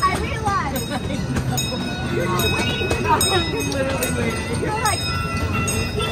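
Open-car amusement-park miniature train running along its track with a steady low rumble and scattered light clicks, while people's voices sound over it.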